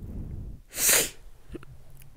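A person sneezing once: a short, loud, hissy burst about a second in.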